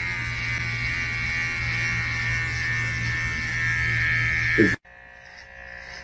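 Electric hair clippers buzzing steadily as they cut hair close to the scalp. The buzz drops off abruptly a little under five seconds in, just after a brief vocal sound, leaving a much fainter hum.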